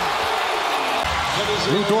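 Arena crowd cheering just after a made three-pointer: a steady roar without clear voices, until the commentator's voice comes back near the end.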